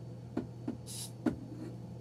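A short hiss from an aerosol bug-spray can, one burst of about a third of a second, with a few light clicks around it.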